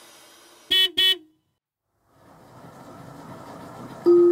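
A vehicle horn gives two short toots in quick succession. The sound then cuts off abruptly, and faint background noise slowly returns.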